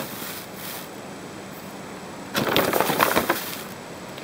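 A measuring spoon scooping granulated sugar: a short crunchy, crackling rattle about two and a half seconds in, lasting about a second.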